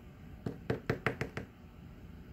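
A quick run of about six sharp knocks on a hard surface in about a second, starting about half a second in.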